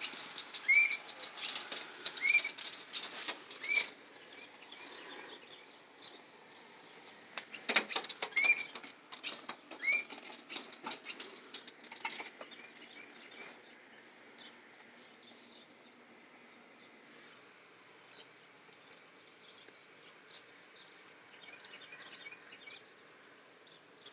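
Tufted titmouse fluttering against a glass door: bouts of wing flaps and sharp taps and scratches on the glass, with a few short high squeaky notes among them. One bout comes in the first few seconds and a second from about a third of the way in to halfway through.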